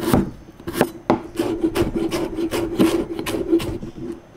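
Chef's knife chopping ginger on a cutting board: a few separate cuts, then from about a second in a quick run of chops, about five a second, as the ginger is minced.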